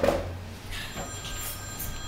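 A telephone ringing.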